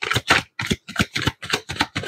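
A deck of tarot cards being shuffled by hand: a quick run of crisp card slaps and flutters, about seven a second.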